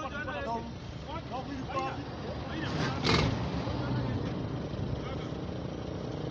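Indistinct background voices over a steady low rumble, with one short, loud burst of noise about three seconds in.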